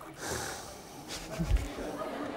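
Stifled, breathy laughter, with a dull low thump about one and a half seconds in.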